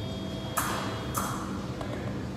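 A metallic ringing tone fading out, with two sharp clicks about half a second apart.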